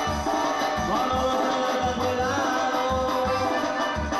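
Live band music in a Latin dance style: a steady bass beat under sustained notes, with a wavering melody line over it.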